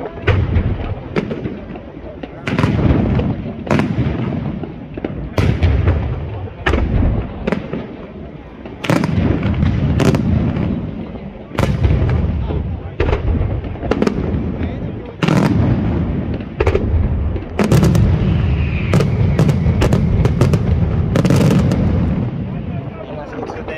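Aerial fireworks shells bursting one after another in sharp, irregular bangs over a low rumble, with the bangs coming thick and fast in the last few seconds.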